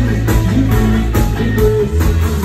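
Live rock band playing an instrumental passage with no vocals: electric guitar over sustained bass and a steady drum beat.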